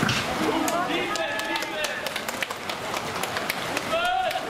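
Voices shouting and calling out, loudest about a second in, over a steady wash of splashing from water polo players swimming and thrashing in the pool, with scattered short sharp sounds.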